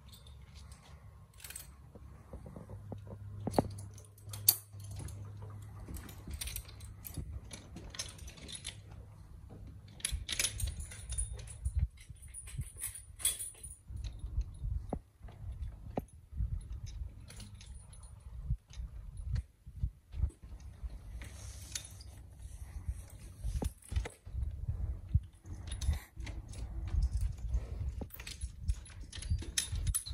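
Metal chains, rings and buckles on a mule's leather work harness jingling and clinking as the harness is unbuckled and taken off, with scattered knocks throughout.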